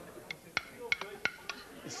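A utensil clinking and scraping against a plate as food is scooped up fast: about six short, sharp clicks spread over two seconds.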